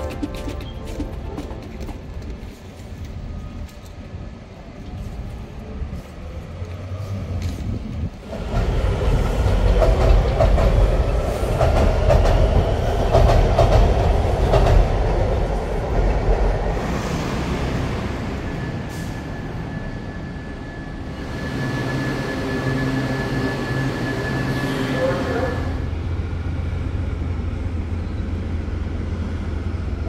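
Washington Metro train rumbling in, loudest over several seconds, then a steady high squeal for about six seconds before it settles to a lower, even hum.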